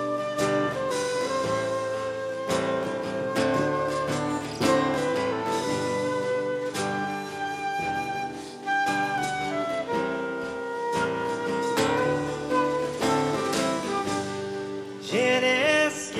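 Instrumental break of a live folk song: a flute carries the melody over strummed acoustic guitar, double bass and drums. A singing voice comes in near the end.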